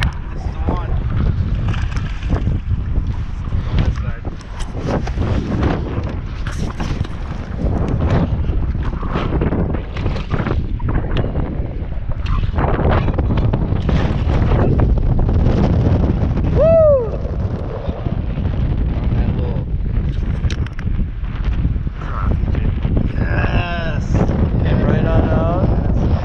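Wind buffeting the microphone in a steady low rumble. A short voice cry that bends up and down comes about two-thirds of the way through, and more brief voice sounds come near the end.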